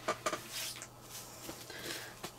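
A few light clicks and soft rustles of small items being handled while disposable gloves are changed.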